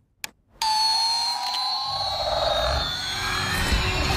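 Battery-powered toy space shuttle clicked on, then sounding its electronic siren-like noises loudly: tones that glide, one rising and one falling, with a low rumble joining about two seconds in.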